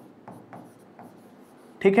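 Pen on an interactive touchscreen board writing an equation: faint soft taps and scratches as the strokes are drawn.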